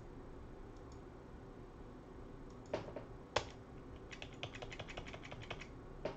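Computer keyboard keys clicking: two sharp separate keystrokes about half a second apart, then a quick run of typing.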